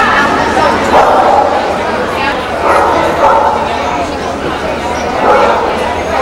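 A dog barking several times over the steady chatter of a crowd in a large indoor arena.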